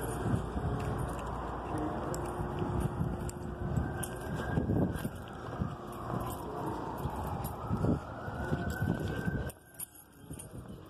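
A siren wailing, its pitch slowly rising and falling, over irregular footsteps and street noise; the sound drops away abruptly near the end.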